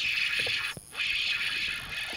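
Spinning reel being cranked as a small hooked bass is reeled in to the boat: a steady whir, broken by a short pause just under a second in.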